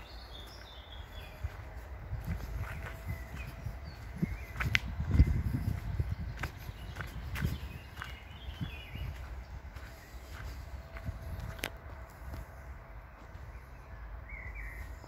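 Footsteps on a woodland floor of bare earth and twigs, with low rumbling and a few sharp clicks and snaps, loudest about five seconds in. Birds chirp faintly.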